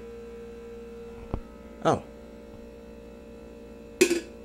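Steady electrical mains hum, with a single sharp click a little over a second in and a brief falling swish about halfway through.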